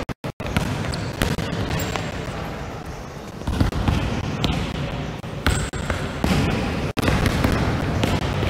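Several basketballs bouncing on a sports hall floor in overlapping, irregular thuds as players dribble and pass during a drill, echoing in the large hall.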